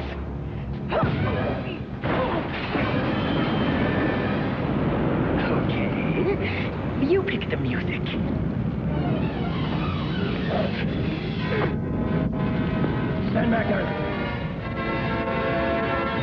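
Film action soundtrack: a continuous rumble of fire with dramatic orchestral score and wordless voices. Sustained musical tones come in near the end.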